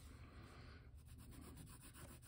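Faint scratch of a Prismacolor coloured pencil drawn across thick paper, laying down a first short stroke of colour.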